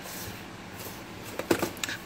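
Cardboard crispbread boxes being handled and set down on a table: a quiet stretch, then a few short knocks and clicks near the end.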